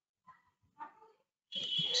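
A mostly quiet room with a faint short sound about a second in. Near the end a man's voice starts a word with a hissing 's'.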